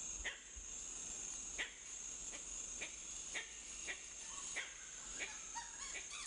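Forest ambience: a steady high insect drone with a string of short, sharp animal calls, about one every half second or so.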